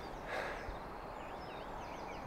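Faint outdoor ambience with several short, quiet bird calls.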